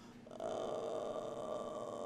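A man's long drawn-out groan of exasperation, starting a moment in and held steady for about two seconds.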